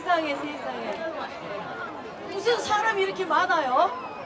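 Speech: a woman talking through a stage microphone and PA, with one phrase near the end swinging widely up and down in pitch.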